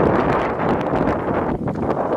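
Wind buffeting the microphone: a steady, fairly loud rushing noise.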